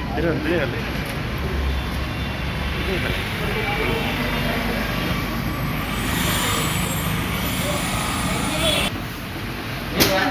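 Indistinct voices of people talking over a steady low rumble and hiss of background noise; the hiss grows louder about six seconds in and drops off suddenly about three seconds later.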